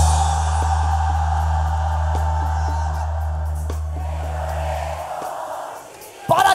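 Sinaloan-style brass banda holding a long sustained chord at the end of a song section, a sousaphone's low note steady underneath, with crowd noise over it. The held chord cuts off about five seconds in, leaving the crowd noise fading.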